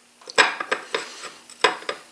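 Glass bowl clinking and knocking against the ceramic plate under it while raw bacon strips are pressed into it by hand: several sharp clinks with a brief ring, the loudest just under half a second in and again past a second and a half.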